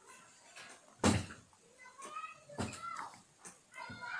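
Two sharp thumps, one about a second in and the louder of the two, the other a second and a half later, with faint wavering calls or voices between them.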